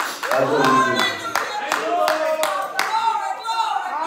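Rhythmic hand clapping, roughly two claps a second, with voices raised over it in worship.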